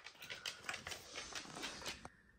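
A dog's claws clicking on a wooden floor as it walks: a faint, irregular string of light ticks, several a second.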